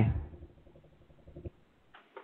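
The end of a spoken 'hi' over a telephone line, then a faint low line hum with a small click about one and a half seconds in, then near silence.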